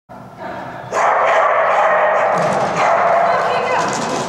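Dogs barking and vocalising in a large, echoing indoor hall, loud and nearly continuous from about a second in, with people's voices mixed in.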